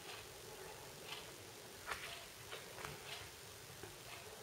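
Faint scattered clicks and light rustling from a packaged pair of socks with a cardboard header card being handled in the hands, over low room tone; the clearest click comes about two seconds in.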